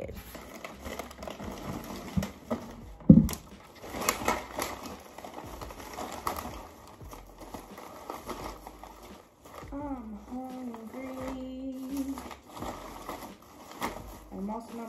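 Plastic trash bag rustling and crinkling as it is pulled out of a wastebasket and handled, with one loud thump about three seconds in.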